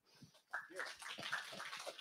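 Faint rustling handling noise from a handheld microphone as it is passed from one speaker to another, with indistinct murmur from the room.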